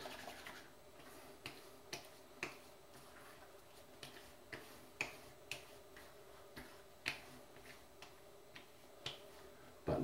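Hands patting aftershave onto a freshly shaved face and neck: about fifteen faint, light slaps, irregularly spaced.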